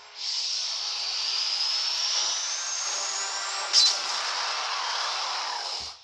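Cartoon magic sound effect for a streaking cloud of magic mist: a steady whooshing hiss with a faint whistle rising in pitch, a brief sharp burst about four seconds in, then an abrupt cut-off near the end.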